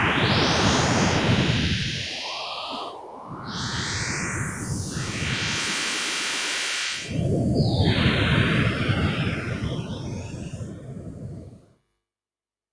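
Synthesized spectrogram-art audio: a harsh, shifting electronic buzz and hiss built so that its spectrogram draws a picture, here a cat's face. It dips about three seconds in, comes back louder about seven seconds in, and cuts off suddenly near the end.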